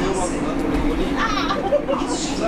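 Several people talking and chattering over one another, with a steady low hum underneath.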